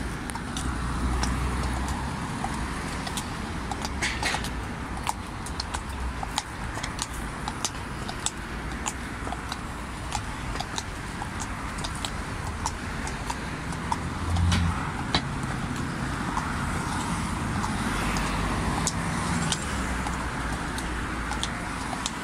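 Road traffic on a busy road, cars passing close by in several swells, with the sharp irregular clip of shod horses' hooves walking on a concrete footpath.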